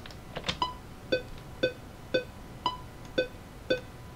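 Cubase software metronome clicking along with playback: short pitched beeps about two a second, with every fourth beep at a different pitch marking the start of each 4/4 bar. The project tempo is ramping down, so the clicks slow slightly.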